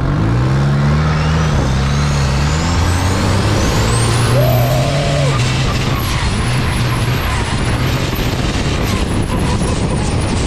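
Twin-turbo diesel engine of a longtail riverboat running flat out. The engine note climbs in the first second, then holds steady, while a thin turbocharger whine rises steeply in pitch over the first several seconds. Over it all is a dense rush of wind and spray.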